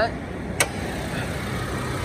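2009 Toyota Fortuner's original engine idling steadily in the open engine bay, with a single sharp click about half a second in.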